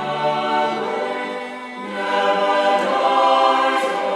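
Choir singing a slow Taizé chant in held, sustained chords, dipping briefly and then swelling louder about halfway through.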